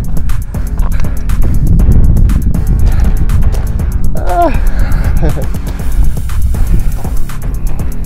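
Wind buffeting the phone's microphone, a heavy low rumble, with background music underneath. A man gives a short exclamation about four seconds in.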